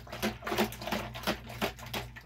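Rapid, irregular clicking and crackling, several clicks a second, over a steady low electrical hum.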